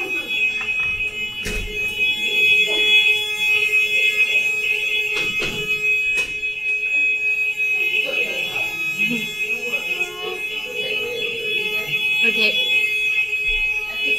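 An alarm sounding a continuous high-pitched tone, with a lower steady hum beneath it and a few scattered knocks.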